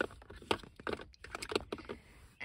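A hand rummaging among plastic CD cases and small items in a car's centre console compartment: an irregular run of light plastic clicks and taps.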